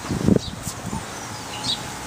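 Outdoor background noise, with one low thump about a quarter second in and a few faint, brief high chirps later on.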